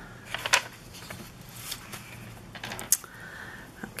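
Handmade bookmarks with small charms and a traveler's notebook being handled: scattered light clicks and rustles, the sharpest about three seconds in.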